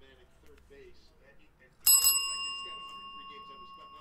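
A small bell struck once, about two seconds in, with a sudden clear, high ring that fades slowly over the next two seconds. It is the breaker's celebration signal for a big hit.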